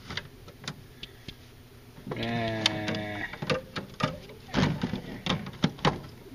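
Bottles and cans being handled and set down in a small refrigerator: scattered knocks and clinks against the shelf and each other. A steady hum lasts about a second, two seconds in.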